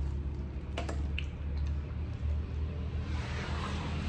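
Quiet eating sounds: a few light clicks of a spoon and soft squishy chewing of sticky rice cake, over a steady low background hum.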